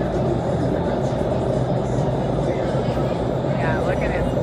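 Steady roar of the indoor skydiving wind tunnel's airflow and fans, running at flying speed as they hold the flyers up.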